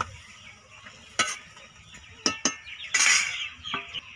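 Metal spoon stirring chopped banana flower in water in a metal kadai, clinking a few times against the pan's side, with a louder scrape about three seconds in.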